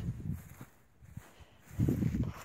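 Footsteps on dry grass, heard as low, irregular thuds. They pause for about a second in the middle and start again near the end.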